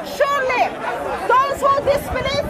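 Speech: a woman reading aloud, with other voices chattering in the background.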